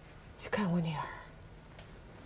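A single short hushed vocal sound about half a second in, opening with a hiss and ending in a falling voiced tone, over quiet room tone.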